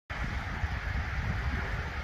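Low, gusty rumble of wind buffeting the microphone, over a faint steady outdoor hiss.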